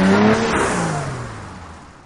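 A car engine passing by: its pitch holds briefly, then drops steadily as the sound fades away.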